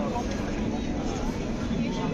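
Street crowd: many passers-by talking at once, mixed voices with no one voice standing out, over a steady low rumble of city noise.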